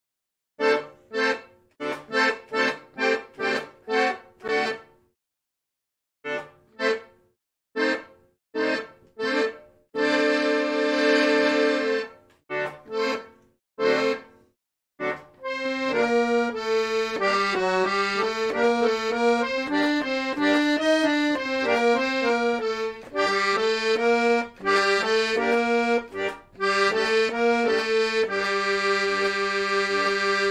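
Piano accordion played in halting practice: short detached chords broken by pauses for the first half, then a continuous melody over sustained lower notes from about halfway, closing on a long held chord.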